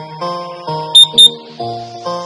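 Two short, loud, high electronic beeps about a second in: an interval timer signalling the end of the rest period. Under them, background music of plucked guitar-like notes.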